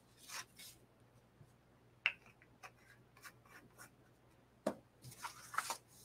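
Sheets of paper being handled, folded and slid across a tabletop: faint rustling with a few sharp taps, clearest about two seconds in and again near the end.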